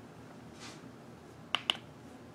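Two sharp clicks in quick succession near the end, the loudest sounds here, made while handling makeup tools. A brief soft swish comes about half a second in.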